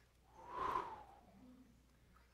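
A single short, breathy exhale like a whoosh, swelling and fading about half a second in and lasting under a second.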